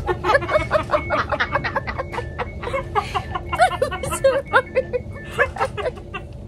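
A woman laughing hard and uncontrollably in quick, high, breathy bursts, over the steady low rumble of a train.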